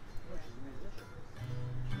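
Acoustic guitar played briefly, a low note held and ringing from about halfway through, with a sharp strum near the end.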